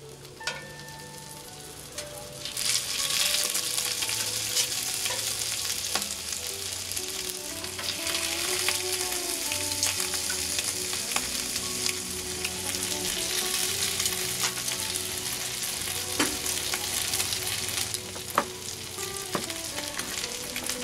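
Bratwursts sizzling in melted butter on a hot Blackstone steel flat-top griddle. The sizzle grows much louder about two and a half seconds in and then holds steady, with a few sharp clicks near the end.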